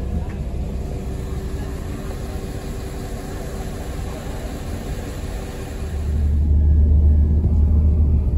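Train cabin interior as the train pulls out of the station: a steady hum at first, then from about six seconds a much louder low rumble as it picks up speed.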